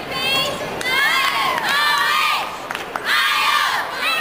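A crowd cheering with many high-pitched shouts and yells overlapping, rising about a second in, easing briefly, then swelling again: cheering a gymnast's release move on the uneven bars.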